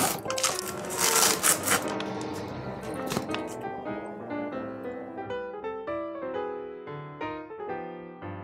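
A plastic snack packet of gummies crinkling and being torn open for about the first three seconds, over background music. After that only the music is heard, a melody of clear separate notes.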